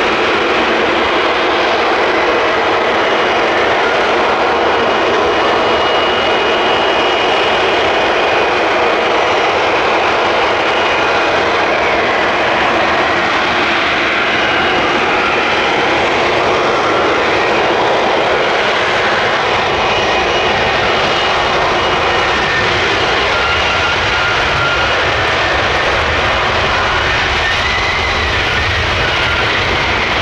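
Lockheed Martin F-35B in a jet-borne hover, its F135 turbofan and shaft-driven lift fan running loud and steady, with whining tones that drift in pitch, as it descends for a vertical landing. A deeper rumble builds near the end as it comes down onto the runway.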